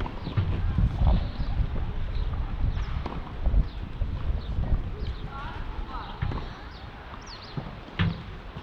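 Outdoor ambience dominated by wind buffeting the microphone, an uneven low rumble that eases in the second half. Voices sound in the background, with a few short high chirps.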